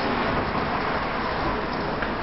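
Steady outdoor urban background noise, a traffic-like rumble and hiss with no distinct events.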